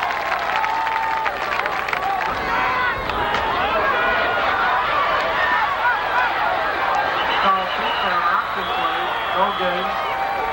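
Spectators in the stands at a football game talking and shouting over one another, a steady babble of many voices that rises and falls with the play.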